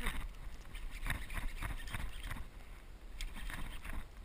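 Wind rumbling on a small action-camera microphone, with water lapping around a kayak. Scattered short knocks and clicks come in two clusters, about a second in and again past three seconds.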